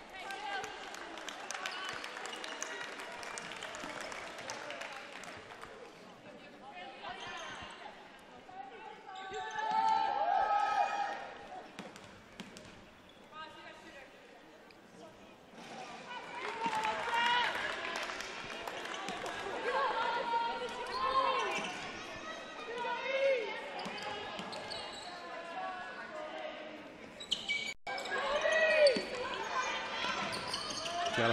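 Indoor basketball arena ambience during a stoppage for free throws: scattered voices and crowd chatter echoing in the hall, with a basketball bouncing on the hardwood floor.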